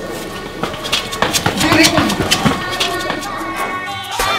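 Indistinct voices mixed with many short, sharp knocks and clicks, over background music with steady held notes.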